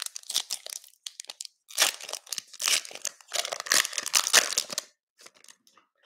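Wrapper of a 2021 Panini Prizm Football cello pack crinkling and tearing as it is ripped open by hand: a run of crackly rustles, loudest from about two to five seconds in, thinning to a few light rustles near the end.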